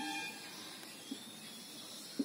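Quiet, steady hiss of room tone with a few faint short squeaks from a marker writing on a whiteboard, mostly near the start.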